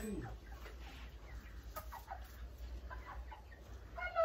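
Chickens clucking softly, a scattered handful of short, faint calls. A brief low vocal sound fades out at the very start.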